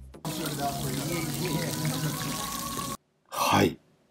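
T-bone steak sizzling in its fat on a very hot serving plate, a steady hiss. It cuts off suddenly about three seconds in and is followed by a short loud burst of noise.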